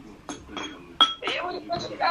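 A light clink of a small hard object about a second in, with a brief ringing tone after it, over faint speech.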